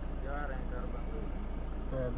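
A man's faint, brief spoken reply over a steady low rumble.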